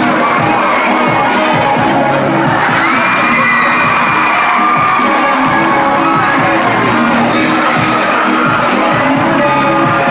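A large audience cheering and screaming loudly and without a break, over music with a repeating beat; one long high-pitched cry is held for about two seconds near the middle.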